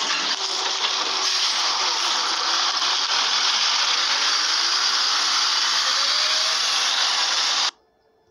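Loud steady rushing noise from a Volvo bus with Wright bodywork pulling away, with a faint whine rising in pitch through the middle; the sound cuts off suddenly near the end.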